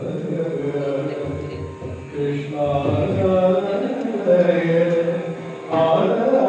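A male Yakshagana bhagavata singing a slow devotional invocation in long, gliding held notes, with a louder phrase beginning near the end.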